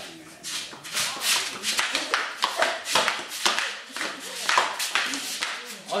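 Flip-flops shuffling and slapping on a concrete floor in an irregular run of sharp strokes, mixed with breathy laughter.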